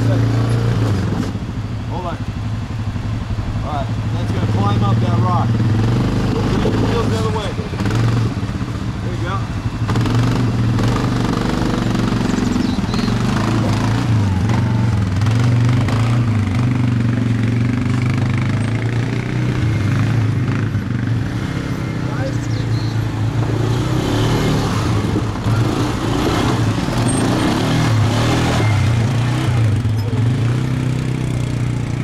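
ATV engines running, a steady low drone that shifts a little in pitch now and then as the machines move.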